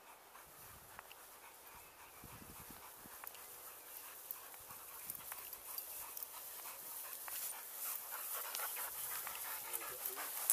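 Dog panting, growing louder as it comes up close.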